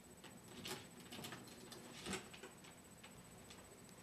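Faint scattered clicks and light knocks of a small box being handled and opened, the strongest two about a second apart.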